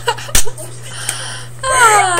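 Two girls laughing hard: mostly breathless, wheezy laughter, with a pitched laugh coming back near the end. A sharp knock, the loudest sound, comes about a third of a second in.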